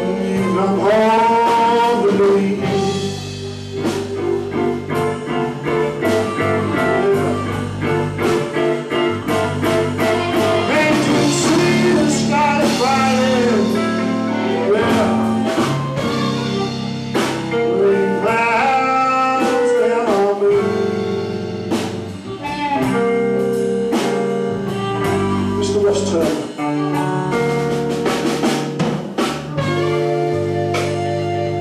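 A blues band playing live: amplified blues harmonica, cupped to a microphone and playing bent notes, over electric guitar, drums and bass.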